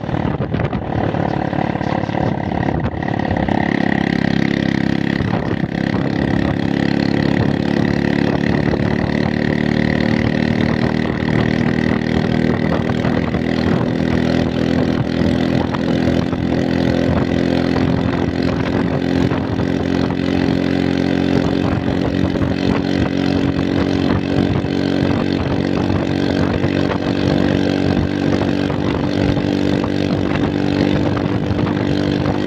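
Motorbike engine running steadily while riding along a road, with road and wind noise; the engine note grows stronger about three to four seconds in, then holds even.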